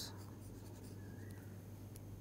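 Faint scratching and light tapping of a stylus on a tablet screen as handwritten notes are erased, over a low steady hum.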